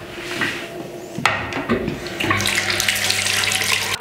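Bathroom tap running into the sink, the water flow getting much louder about a second in, as a face scrub is rinsed off.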